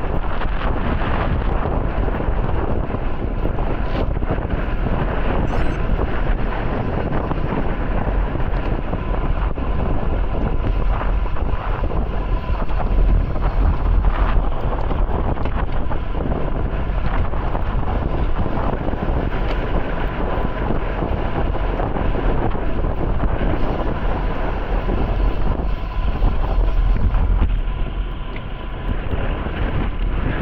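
Steady wind noise on the microphone of a camera mounted on a road bike moving at race speed in the rain, mixed with the hiss of tyres on wet road and scattered small clicks.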